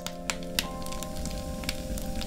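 Firewood crackling in a wood stove, with sharp, irregular pops, over background music with held notes.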